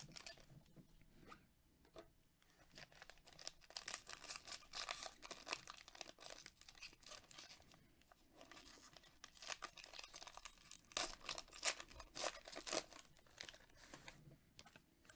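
Foil wrapper of a Panini Prizm football trading-card pack being torn open and crinkled by gloved hands, in two spells of crackling, the second louder.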